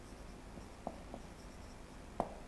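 Marker pen writing on a whiteboard, faint, with a couple of small taps about a second in.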